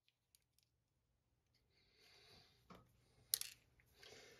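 Near silence, with a couple of faint clicks and one sharper click about three seconds in, from handling a small electric can motor and its lead wire.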